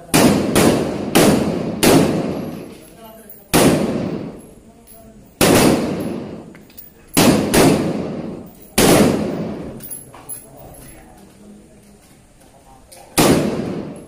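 Galil ACE rifle being fired to zero it: about nine sharp cracks, irregularly spaced from half a second to a few seconds apart. Each rings out and dies away over about a second, with a longer pause before the last shot near the end.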